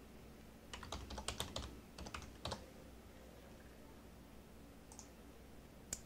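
Faint typing on a computer keyboard: a quick run of keystrokes about a second in and a few more around two seconds, followed by a couple of lone clicks near the end.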